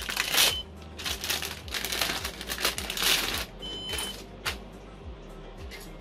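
A hard drive's plastic anti-static bag crinkling as it is opened by hand. The Synology DS923+ NAS beeps twice, a short high tone about half a second in and another around four seconds: its alarm for a pulled drive. A low fan hum runs underneath.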